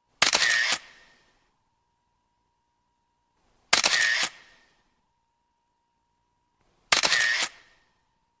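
Camera shutter firing in three short motor-driven bursts of several rapid frames each, about three seconds apart.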